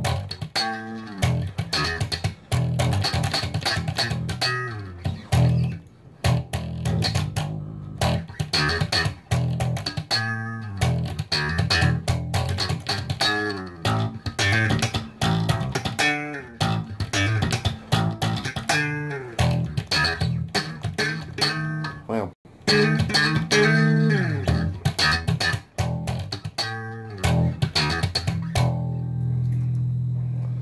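Electric bass guitar played slap style: a fast, percussive groove of thumb slaps and popped strings over low notes, ending on one held note that rings out near the end.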